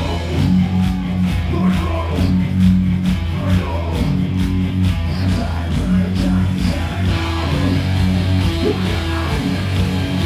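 Live rock band playing: electric guitars and bass guitar over a drum kit, with a steady beat and held low bass notes.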